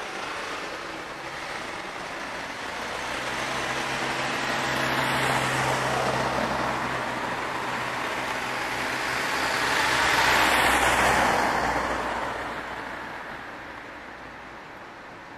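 Vehicles of a heavy-transport convoy driving past one after another: a first passes about five seconds in, then a heavy truck passes louder about ten seconds in with a steady low engine drone over its tyre noise, and the sound fades away.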